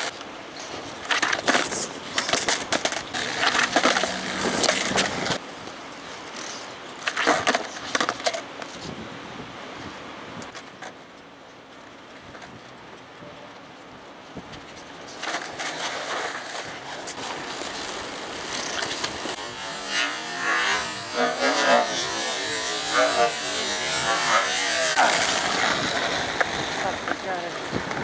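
Skateboard on concrete: wheels rolling and the deck and trucks knocking and clattering down as flatground hospital-flip attempts are popped and landed, with several sharp knocks in the first eight seconds. A steady rolling rush takes over from about halfway through.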